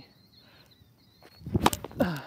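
A tennis racket strikes the ball on a kick serve: a sharp hit about three-quarters of the way in, with a few smaller knocks and scuffs just around it. Before it there is only faint background.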